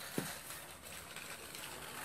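Battery-powered Trackmaster toy train's small motor running, a faint steady hiss-like whirr, with a brief click just after the start.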